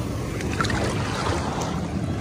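Shallow sea water sloshing and splashing right against the microphone, with small droplet ticks and a low wind rumble on the mic.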